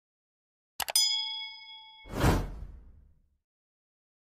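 Subscribe-button animation sound effects. About a second in come two quick mouse clicks, then at once a bright notification-bell ding that rings out for about a second, followed by a short whoosh.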